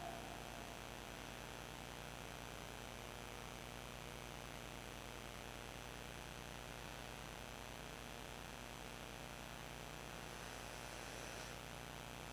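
Faint steady electrical hum with an even background hiss, and no other sound.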